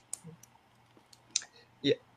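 A few short, faint clicks scattered through a pause, then a brief spoken 'yeah' near the end.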